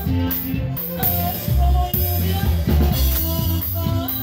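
Live conjunto band playing dance music on accordion, saxophone, guitars, electric bass and drums, with a steady beat.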